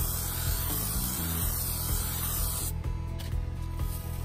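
Earth Jet aerosol insecticide spraying in a continuous hiss, stopping suddenly a little under three seconds in.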